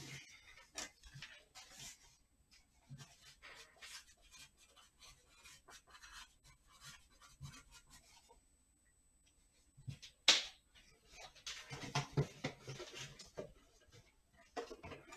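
Light handling noises: small knocks, clicks and rustles of objects being moved on a desk, with one sharper click about ten seconds in and a busier patch of handling just after it.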